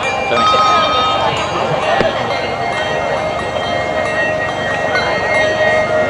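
A handbell team ringing handbells, several held bell notes at different pitches starting and fading one after another, over crowd chatter.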